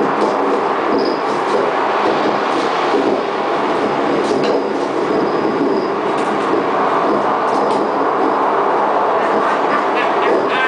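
Live experimental noise music: a dense, steady wash of harsh noise from electronics and amplified objects, with scattered clicks and a few short high tones on top.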